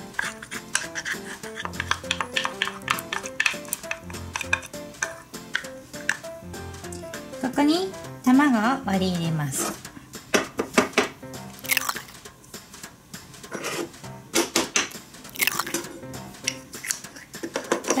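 Background music with a simple stepped melody over repeated clicks and scrapes of a small spatula against a toy pot and a stainless steel bowl as thick paste is scraped out. A few louder sharp knocks come later.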